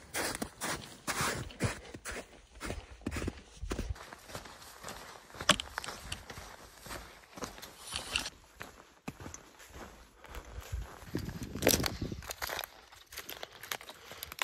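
Footsteps of a person hiking in trail-running shoes over a dirt path strewn with dry grass and sticks, in an irregular run of steps.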